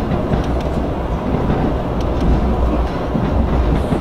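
Passenger train running on the rails, heard from inside the carriage: a steady low rumble with a few faint clicks from the track.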